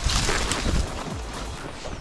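A horse moving through dense scrub, leaves and branches rustling and scraping against it and the rider.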